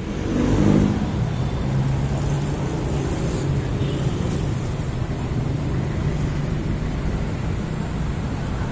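Road traffic: vehicle engines running steadily, with a louder engine rising in pitch about half a second in.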